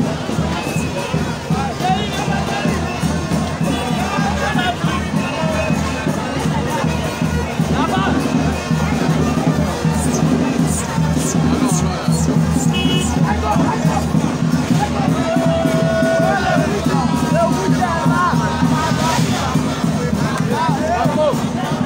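Loud music with a steady pulsing bass playing over a large crowd of many voices talking and calling out at once.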